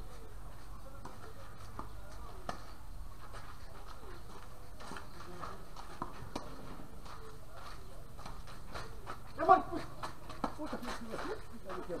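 Tennis rally on an outdoor court: faint, short racket-on-ball hits a few seconds apart. About nine and a half seconds in comes a loud shout from a player, followed by scattered voices.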